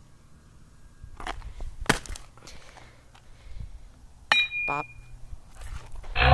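A baseball bat knocking at broken laptop screen pieces: a few scattered sharp knocks and clinks, the loudest about two seconds in, and one with a short ringing clink a little after four seconds.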